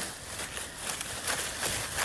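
Sound effect of running footsteps through undergrowth: soft irregular steps, about three or four a second, over a rustling hiss.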